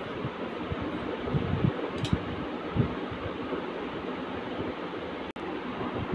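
Steady background hiss with soft, irregular knocks and a sharp click about two seconds in, from large tailoring scissors cutting through cotton lawn cloth on a carpeted floor. The sound drops out for an instant near the end.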